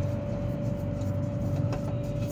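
Steady mechanical hum with a constant mid-pitched tone, and faint rubbing with a couple of light clicks near the end as a spin-on truck filter is threaded onto its housing by hand.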